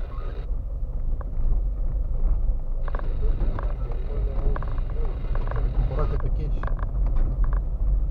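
Car driving slowly along a rough dirt track, heard from inside the cabin: a steady low rumble with scattered clicks and knocks starting about three seconds in.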